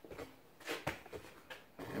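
A few faint, short clicks and knocks, the sharpest one just before the middle.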